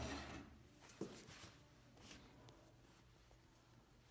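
Near silence with faint handling sounds: a light click about a second in and soft rustles of cotton fabric being arranged at a sewing machine.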